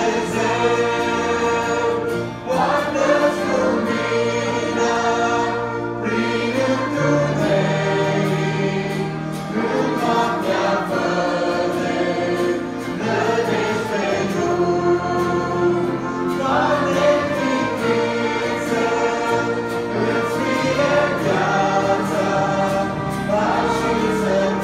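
A mixed church choir singing a Christian song in Romanian with instrumental accompaniment, steady and full throughout.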